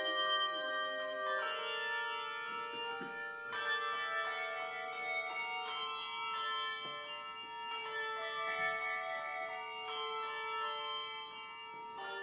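Handbell choir playing a piece: chords of handbells struck together and left to ring on and overlap, with new chords entering every two to four seconds over a low bell note held through most of it.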